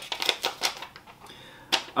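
Folded paper card being unfolded and handled: a quick run of crisp paper crackles in the first second, then a single sharp crackle near the end.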